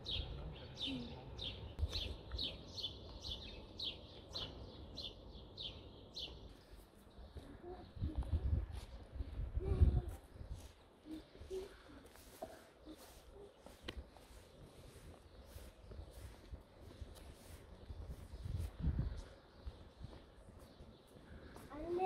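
A songbird singing a fast run of repeated falling chirps, about four a second, that stops about six seconds in. After that come a few low rumbles, the loudest about ten seconds in.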